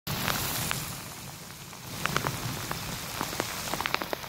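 Heavy rain falling steadily on a waterlogged lawn and ground, a constant hiss with scattered sharp ticks from individual drops landing close by.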